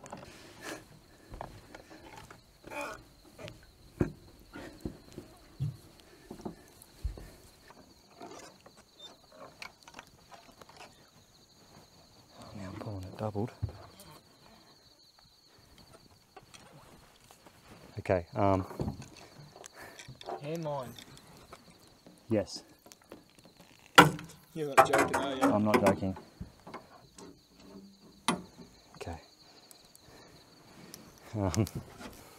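Night insects trilling steadily at a high pitch, with a second, higher trill joining a few seconds in, over scattered clicks and knocks of a fishing reel and tackle being handled. A few short voice-like sounds break in, the loudest about 24 seconds in.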